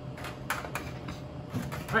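A few light clinks and knocks of metal bar tools, a cocktail shaker tin among them, being picked up and set down on a bar mat.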